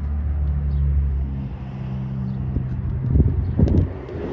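Low, steady hum of a motor vehicle engine running. A few light knocks and rustles come near the end.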